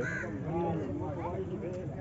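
Background voices of several people talking, with a bird calling over them.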